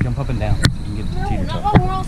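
Knocks and rubbing from a handheld camera being handled right against its microphone: three sharp knocks over a low rumble. A voice rises and falls in the second half.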